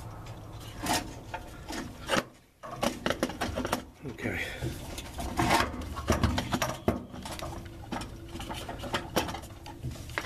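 Hands working an EVAP vent valve into its plastic mounting slot: irregular plastic clicks, scrapes and rubbing, with louder rustling handling bursts close to the microphone.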